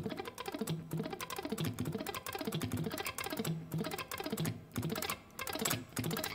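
Electric guitar on a clean tone, sweep-picking an arpeggio very lightly, up and down across the strings about once a second; each pick stroke clicks audibly on the strings over the soft notes.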